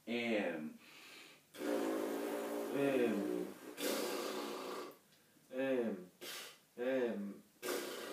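Wordless sounds from a brass student's mouth: a short falling 'mm' hum, then a long airy blown tone with heavy breath noise. A breathy blow follows, then three more short falling hums about a second apart near the end. These are humming and lip exercises for tuba mouthpiece playing.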